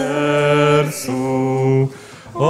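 Devotional chant sung slowly in long held notes, each starting with a soft hissing consonant, with a short pause for breath at the end.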